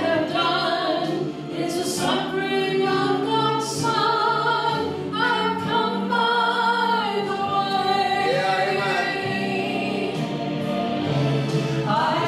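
Two women singing a gospel song together through microphones, holding long notes.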